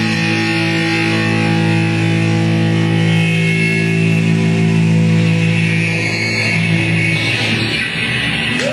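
Live rock band holding one distorted electric-guitar chord that rings on steadily as the closing chord of a song, then cuts off sharply just before the end.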